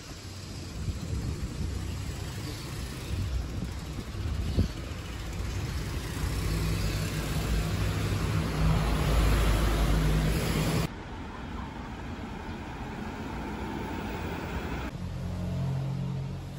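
Car engine and tyres on the road, growing louder as a car comes close and passes, loudest about nine to ten seconds in, then cut off suddenly; quieter street traffic follows.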